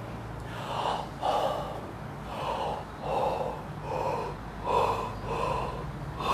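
A person breathing forcefully in short, repeated gasps, about seven in a row at roughly one a second, as in a breathing exercise of gulping air.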